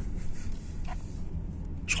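Steady low engine and road rumble inside a car's cabin while driving.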